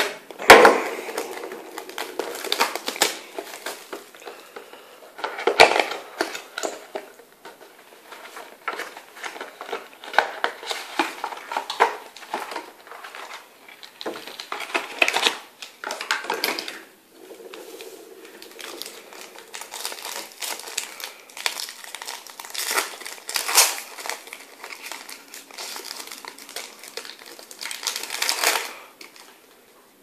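Plastic shrink wrap on a trading card box crinkling and being crumpled by hand in irregular bursts as the sealed box is unwrapped and opened.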